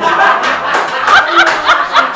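Loud laughter right after a joke, with short rising bursts throughout, that starts suddenly.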